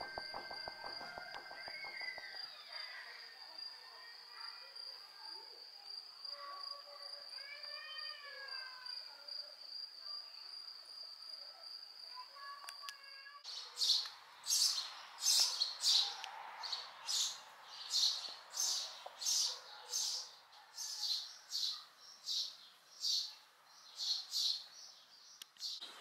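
Birds chirping. For the first half, a few faint gliding calls sit over a steady high-pitched whine. From about halfway on, short chirps repeat about one and a half times a second.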